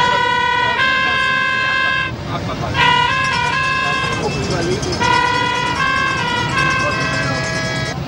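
A horn playing a tune in held notes that step up and down about once a second, with quick note changes around three seconds in and short breaks near two and four seconds. A steady low rumble runs underneath.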